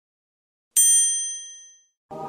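A single strike of a small, high-pitched bell, ringing clearly and dying away within about a second.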